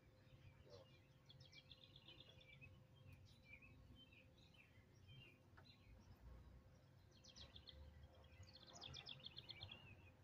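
Faint songbird singing: trilled phrases of quick repeated notes, one about a second in and two more near the end, over a low steady background rumble.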